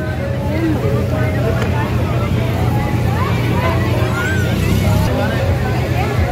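Fairground crowd chatter: many indistinct voices at once over a steady low rumble.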